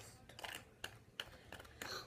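A few faint, scattered clicks and light taps from hands handling the small plastic trays and utensils of a DIY candy-making kit.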